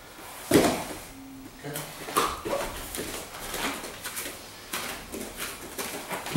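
Scuffling and thuds of two grapplers moving on a padded mat during a takedown, with a sharp knock about half a second in and brief low voices.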